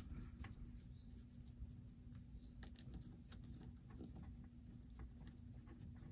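Fingers twisting stripped copper wire ends together: faint, irregular scratching and small ticks of wire strands and insulation being worked by hand, over a steady low hum.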